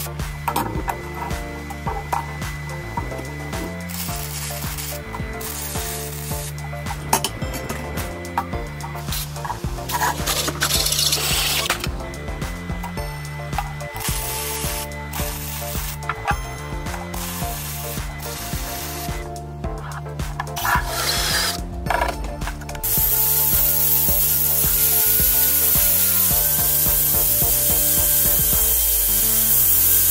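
Background music with a repeating bass beat, with MIG welding crackle over it. In the last several seconds the welding gives way to a loud, steady hiss.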